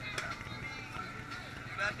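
People talking, with music playing in the background.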